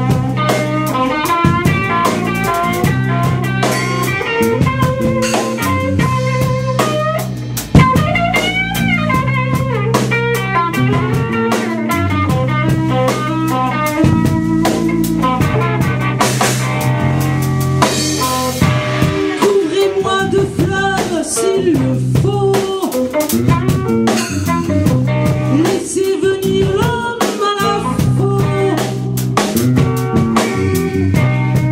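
Live band improvising on electric guitars over a drum kit, with a loud accented hit about eight seconds in.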